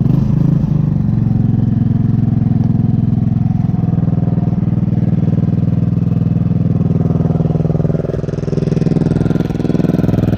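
2007 JonWay moped's GY6 150cc single-cylinder four-stroke engine, its revs dropping back in the first second and then idling steadily. The exhaust is loud, opened up with washers.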